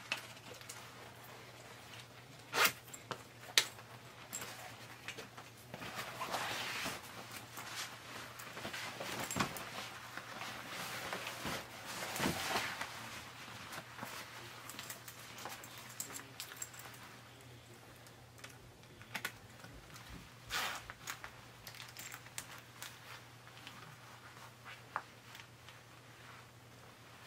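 Cropped faux-leather biker jacket rustling and creaking as it is put on and the sleeves and collar adjusted, in swells of handling noise with a few sharp clicks, two of them loud about three seconds in. A low steady hum runs underneath.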